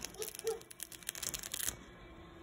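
Clear plastic transfer sheet of a vinyl sticker being peeled off a fiberglass cast: a run of crackling clicks that stops about three quarters of the way through. The vinyl lettering comes away with the sheet because it has not stuck to the cast.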